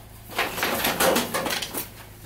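Hand rummaging through stored items: a quick run of small clatters and knocks as things are shifted about.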